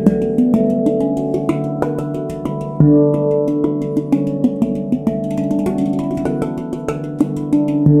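Avalon Instruments handpan in D Ashakiran tuning played with the fingertips: quick light taps over notes that ring on and overlap, with a deep bass note struck about three seconds in and again at the end.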